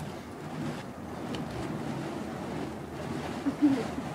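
Steady rushing whoosh of burning fire poi being swung on their chains, with a faint voice near the end.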